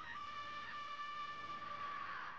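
A boy's voice from the anime's soundtrack screaming one long, high-pitched cry of "stop" in Japanese, held at a steady pitch for about two seconds. It is low in the mix.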